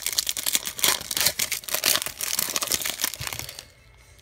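Pokémon TCG Fates Collide booster pack wrapper being torn open by hand: a dense run of crinkling and crackling that dies away near the end.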